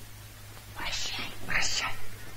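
Whispering: two short hushed bursts of breath-only speech a little after a second in, over a low steady hum.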